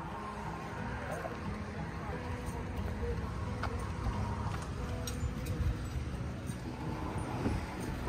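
Wind rumbling on the microphone on an open waterfront.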